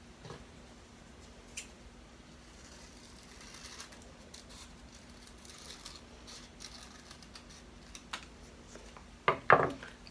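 Scissors cutting through construction paper, faint, sparse snips as two small circles are cut out. A short, louder knock comes near the end.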